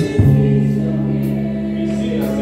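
Group of voices singing a gospel hymn with a band, an electric bass underneath moving to a new low note just after the start and holding it.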